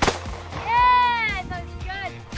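A single shotgun shot fired at a thrown clay target right at the start. About half a second later comes one high whoop from a single voice, rising then falling in pitch, over background music.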